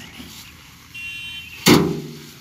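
Paddy sheaves beaten by hand onto an upturned metal drum to thresh out the grain: one loud strike with a short low ring near the end, after a weaker knock near the start.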